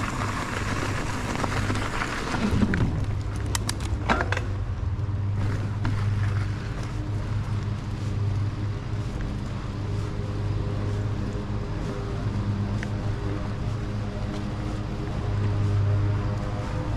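Mountain bike rolling along a dirt and gravel trail: steady tyre and frame rumble with wind on the helmet or chest camera's microphone, and a short run of clicks and rattles about three to four seconds in.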